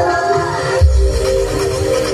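Loud music played over a large carnival sound system, with held synth notes over a deep, heavy bass and a strong bass hit about a second in.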